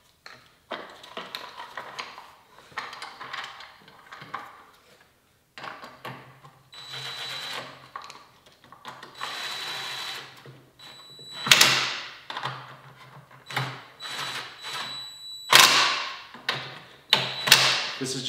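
Cordless drill-driver running in several bursts, driving fasteners into a plastic scooter battery box, with the loudest runs about eleven and fifteen seconds in. Before that, plastic parts are handled, with scattered clicks and knocks.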